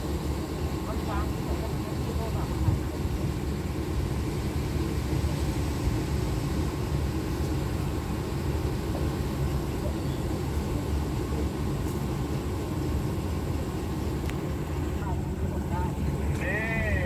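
Steady low diesel rumble of a passenger train standing at the platform with its engines idling.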